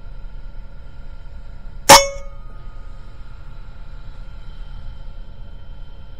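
A single shot from an unregulated Evanix Rainstorm SL .22 PCP air rifle firing a slug, about two seconds in: one sharp crack with a short metallic ring after it.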